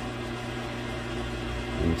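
Steady low mechanical hum with a faint even hiss, like a fan or motor running in the background.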